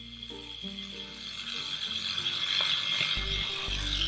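A toy toothbrush scrubbing against a plastic doll's teeth: a steady scratchy brushing that grows louder, over soft background music.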